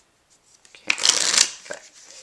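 Playing cards being riffle-shuffled: about a second in, the two halves of the deck riffle together in one quick burst of rapidly flicking card edges lasting about half a second, followed by a light tap or two as the halves are pushed in.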